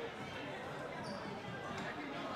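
Indistinct voices and chatter in a gymnasium, with a basketball bouncing on the hardwood floor. There is a brief high-pitched squeak about a second in.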